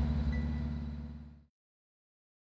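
Boat engine running with a steady low, pulsing drone, fading out and stopping about a second and a half in, then silence.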